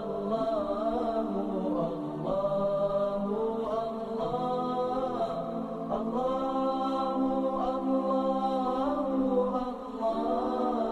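Background music: a wordless vocal chant of long held notes that slide from one pitch to the next, with no beat.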